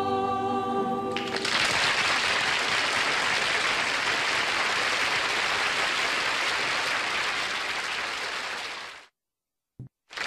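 Voices hold a final sung chord for about a second, then a studio audience applauds steadily. The applause cuts off suddenly about a second before the end.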